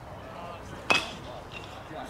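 A baseball bat strikes a pitched ball once, about a second in: a single sharp crack with a brief ring.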